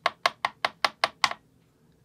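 A metal trading card, an Upper Deck Credentials Steel Wheels insert, tapped in a quick run of seven sharp clicks about five a second, then stopping about halfway through.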